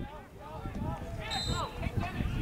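Players' voices calling out across an open lacrosse field, with a short, high referee's whistle blast about a second and a half in.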